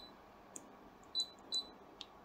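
Short, high key beeps from an F480 embroidery machine's touchscreen as the thread tension is stepped up with the plus button: one at the start and two more just over a second in.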